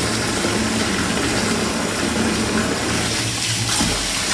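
Bath tap running steadily, its stream splashing into a partly filled bathtub.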